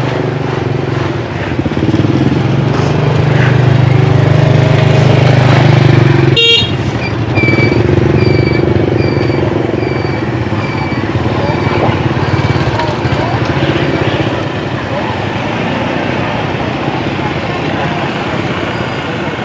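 Busy market street traffic: a motorbike engine running close by for a few seconds, a short horn toot about six seconds in, then a string of high electronic beeps, about one and a half a second, that fade away over several seconds, under background voices.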